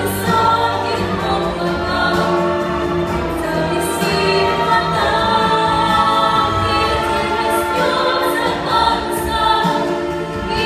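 A boy and a girl singing a duet in Russian with instrumental accompaniment, long held notes, recorded live from the audience of a stage musical.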